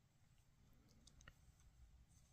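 Near silence with soft yarn-handling noise and a few faint small clicks about a second in, as a wooden crochet hook works stitches in yarn.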